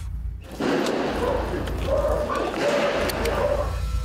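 Rocks and boulders thrown from higher up crashing and rumbling down the hillside, starting about half a second in and running on for about three seconds. The traffickers throw them on purpose to mimic an explosion and intimidate the police.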